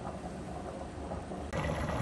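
Pot of stew on an induction hob coming to the boil: a steady low rumble of heating liquid, then a sudden change about one and a half seconds in to louder bubbling of a rolling boil.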